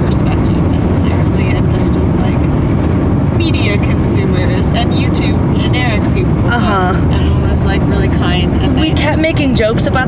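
Steady road and engine rumble inside a moving car's cabin, with short snatches of women's voices a few times.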